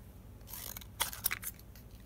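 Scissors cutting through thin chipboard: a soft rasp, then a few crisp snips in the second half.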